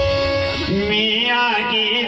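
Live Rajasthani Meena dhancha folk music: a steady held note, then a man's singing voice over a microphone coming in about half a second in and bending up and down in pitch.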